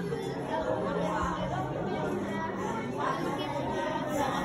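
Several voices chattering, over long, steady low notes that are held for about a second at a time and then change pitch.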